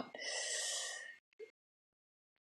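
A woman's audible breath, a gasp-like intake lasting about a second, followed by a small click.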